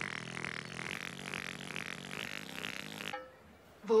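Cartoon sound effect of the voice trumpet rising up out of the ground: a steady rasping, buzzing whir that cuts off suddenly about three seconds in.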